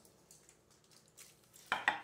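Foil-covered baking dish being carried and set down on a kitchen counter: faint rustling of aluminum foil, then a couple of sharp knocks near the end as the dish meets the counter.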